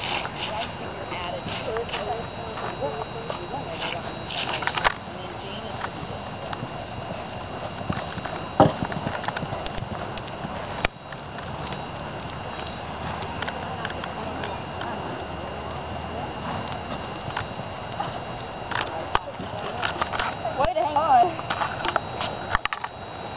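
Horse's hoofbeats on sand arena footing as it canters and walks, with people talking in the background; a single sharp knock stands out about eight and a half seconds in.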